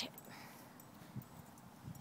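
Quiet outdoor background with a couple of faint, soft thumps from a small dog's booted paws moving on grass.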